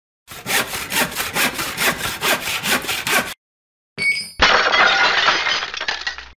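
Hand saw cutting through wood in rapid, even back-and-forth strokes for about three seconds. It stops, and after a short pause a sudden loud shattering crash follows, with a spill of fragments trailing off.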